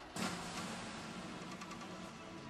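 Sound effect of a logo animation: a sudden swell of noise just after the start, then a steady noisy drone with a faint low hum.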